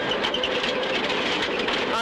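Inside a rally car's cabin at speed: the engine running at steady revs under load, with road and tyre noise.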